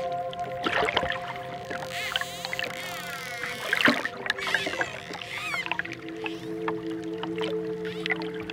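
Soft, sustained relaxation music, a held chord that shifts to new notes about six seconds in, with dolphin whistles and clicks over it: many quick rising and falling whistles and short clicks, busiest in the first half.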